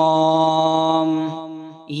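A voice chanting an Arabic prayer (dua) in a slow, drawn-out recitation, holding one long steady note that fades out near the end before the next phrase begins.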